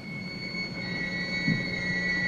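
A steady high-pitched drone of two close tones over a low hum. A third tone joins just under a second in.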